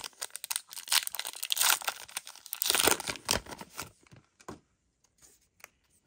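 A trading-card booster pack's wrapper is torn open and crinkled, a dense, loud run of crackles for about four seconds. Then only a few faint ticks are left as the cards are handled.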